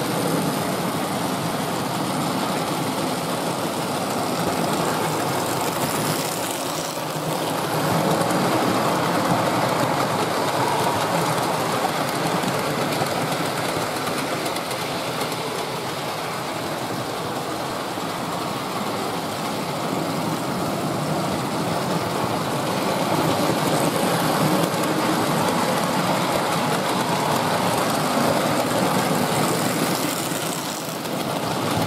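Hornby Dublo 00-gauge model locomotives and coaches running on metal track, a steady mechanical running noise of motors and wheels. It grows louder as a train comes close, about eight seconds in and again over the last several seconds.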